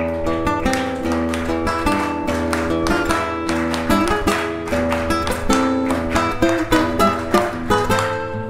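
Acoustic guitar playing an instrumental passage of a chacarera doble, with quick strummed chords mixed with plucked melody notes over ringing bass notes.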